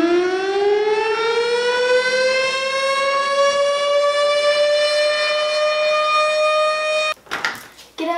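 A siren sound effect winding up: one long tone that rises steeply in pitch, then levels off and holds, and cuts off suddenly about seven seconds in.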